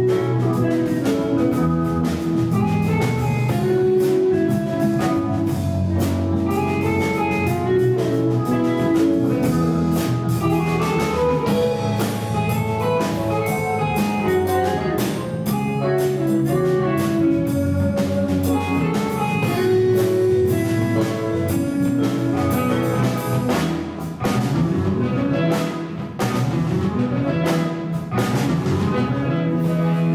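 Live jazz quartet playing an instrumental number on electric guitar, electric bass, drum kit and keyboard, with a steady drum beat.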